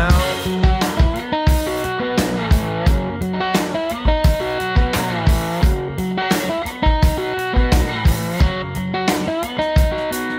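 Rock song with electric guitar over a steady drum beat, an instrumental stretch without singing.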